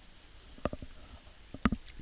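A few short, faint clicks in a quiet pause: one about two-thirds of a second in, then a quick cluster of three or four near the end.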